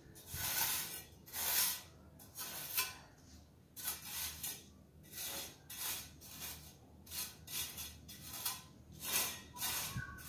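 A pointed steel mason's trowel scraping and cutting through fresh cement screed mortar in a series of short, rough strokes, roughly one or two a second. The mortar is being cut back and scraped out along the edge of the freshly laid screed to form a joint.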